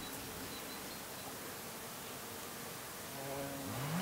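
Quiet, steady open-air ambience hiss, with an insect buzzing in near the end, its pitch rising.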